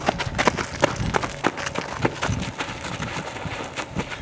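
Several people running and scuffling on dirt ground: a quick, irregular run of sharp footfalls and scrapes.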